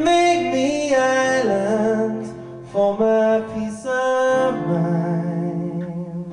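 A man singing long, drawn-out notes that glide between pitches, with acoustic guitar accompaniment, in a live solo performance.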